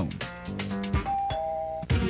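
Two-note doorbell chime, a higher ding about a second in falling to a lower dong, over background music.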